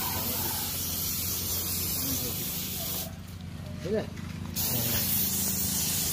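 Compressed-air spray gun hissing steadily as PU polish is sprayed onto wooden furniture; the trigger is let off for about a second and a half midway, then the spraying starts again. A steady low hum runs underneath.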